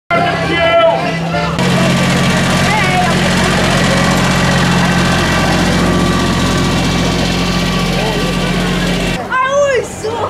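Engine of a trackless road train running steadily as the train passes close by. It follows a brief voice at the start, and high voices take over near the end.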